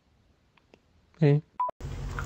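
Mostly quiet, then a man's short "eh" followed by a single brief electronic phone beep. A steady low hum comes in near the end.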